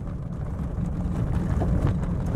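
Steady low rumble of a vehicle being driven along an unpaved dirt road, heard from inside: engine and tyre noise.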